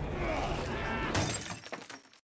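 DVD menu transition sound effects: a rumbling effects bed with gliding creak-like tones, then a sharp crash about a second in, after which the sound fades out near the end.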